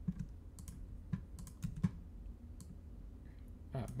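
Computer keyboard and mouse clicks, irregular and spaced out, over a low steady hum.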